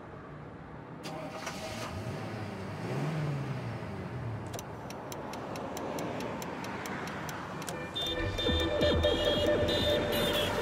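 Opening of an electronic music track built on a sampled car sound: an engine rises and falls in pitch about three seconds in, then a run of even clicks, about four a second. Synth tones and a bass come in about eight seconds in.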